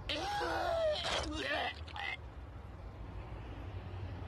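A man's voice crying out and groaning in pain, from an anime's English dub, for about two seconds, then quieter.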